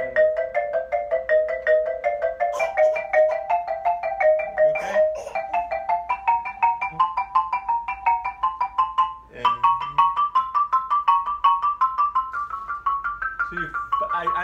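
Xylophone played with two mallets in double stops: a steady run of paired notes, about five strikes a second, climbing gradually in pitch. It breaks off briefly about two-thirds through, then carries on higher.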